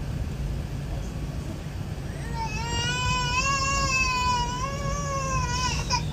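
Steady low airliner cabin noise, with an infant crying in one long, slightly wavering wail from about two seconds in that stops just before the end.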